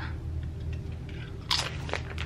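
A chip coated in artichoke spinach dip being bitten and chewed, with one sharp crunch about one and a half seconds in and fainter crunches near the end.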